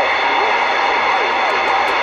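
CB radio receiver hissing with loud, steady static, with faint, garbled voices of distant stations just audible under the noise. A few brief ticks come near the end.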